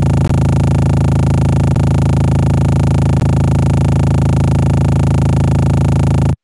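Electronic music frozen by a granular stutter effect (the Max for Live Particle Stutter plugin): a tiny grain of the track repeated very fast into a steady, loud, buzzing drone on one low pitch.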